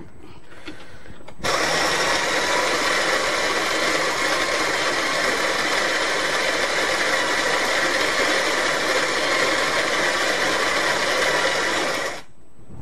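Electric coffee grinder running steadily, grinding beans for espresso; it starts suddenly about a second and a half in and cuts off near the end.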